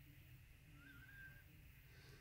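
Near silence: room tone with a faint low hum, and a brief faint high tone about halfway through.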